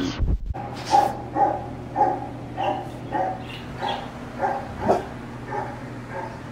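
A dog giving a run of short barks, about two a second, starting about a second in. A brief rustle of the phone being handled comes just before.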